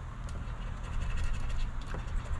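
A coin scraping the silver coating off the multiplier spots of a scratch-off lottery ticket, a run of quick fine scratches that gets a little louder about halfway through.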